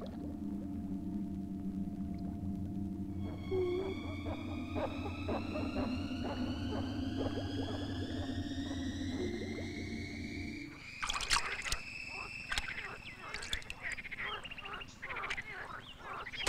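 Underwater sound effects for an animated film: a low humming drone with a slowly rising, whistle-like tone that starts about three seconds in. Near eleven seconds this gives way to a rapid flurry of watery clicks and pops as the worm rises to the surface.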